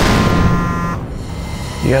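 Digital glitch transition sound effect: a sudden burst of noise at the start with a short buzzing tone, fading within about a second. A man's voice starts speaking near the end.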